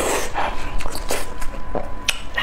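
Close-miked chewing with wet lip smacks, an irregular run of short sticky clicks.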